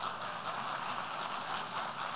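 Steady, even background noise of a large hall during a pause in speech.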